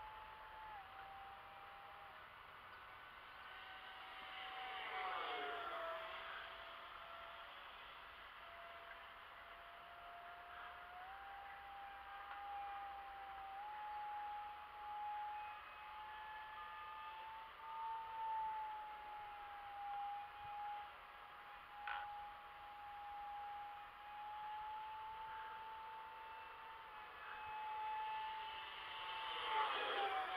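Arrows Hobby Viper electric ducted-fan model jet flying, its fan giving a steady whine that drifts a little in pitch with the throttle. It grows louder as the jet passes overhead about five seconds in and again near the end, the loudest moment.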